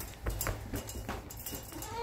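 Baby mini Nubian goats moving about in a wire crate: a few light taps and knocks scattered through, over a low rumble.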